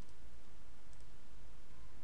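A few faint computer mouse clicks, near the start and about a second in, over a steady low background hum.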